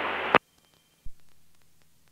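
Aircraft radio hiss in the headset audio cuts off with a click about a third of a second in, the radio squelch closing. Near silence follows, broken by one soft low thump about a second in that fades away.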